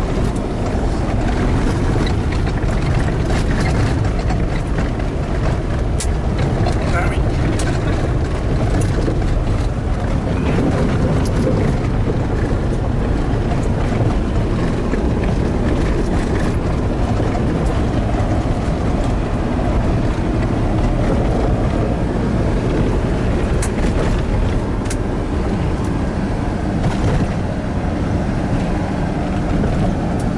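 Cabin noise inside a 4x4 driving on a gravel road: a steady low rumble of engine and tyres on gravel, with a few sharp clicks and rattles.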